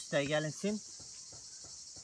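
A steady, high-pitched chorus of insects, running on without a break.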